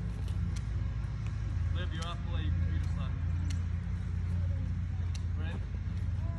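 Faint voices of people talking at a distance, a few short phrases, over a steady low rumble, with a few light clicks.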